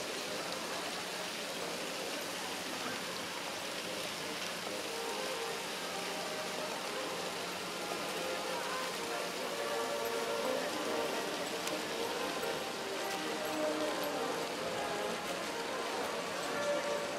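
Steady rush of falling water from a large stone fountain. Faint music and voices sound in the background, most clearly in the second half.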